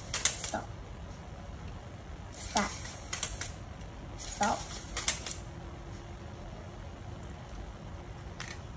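LEGO Spike Prime motor swinging the robot's plastic beam arm, with a few short bursts of plastic clatter and scraping and a faint steady motor hum in the second half.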